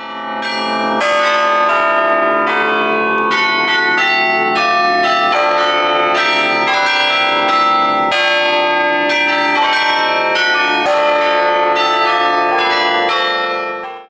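The carillon of the Belfry of Bruges playing a tune automatically, its bells struck in quick succession by hammers driven by the pinned playing drum, the notes ringing into one another. The ringing stops abruptly at the end.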